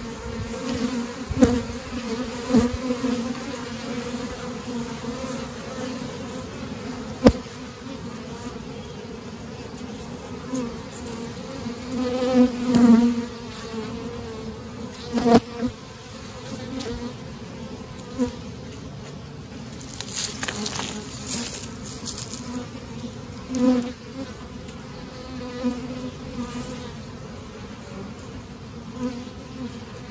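Honeybees from an open hive buzzing in a steady hum, swelling louder for a moment around the middle as bees fly close. A few sharp clicks cut through the buzz.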